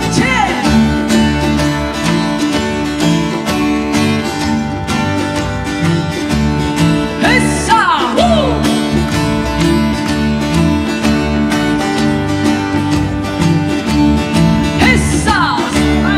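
Live folk band playing a song: plucked yueqin (moon guitar) strings with cello and percussion over a steady beat. Brief sliding vocal calls come about halfway through and again near the end.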